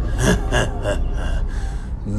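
A man's breathy gasps of excitement, several quick intakes in a row with little voice in them.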